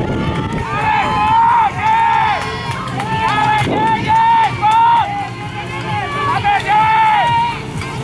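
Crowd of spectators cheering a team on with a string of loud, high-pitched, drawn-out shouts, each about half a second, over general crowd noise.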